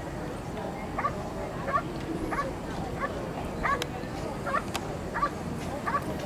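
Schutzhund protection dog barking steadily at the helper hidden in the blind, about two barks a second: the bark-and-hold, in which the dog keeps the helper in place by barking without biting.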